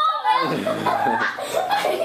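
People laughing, with excited children's voices and a deep chuckle about half a second in.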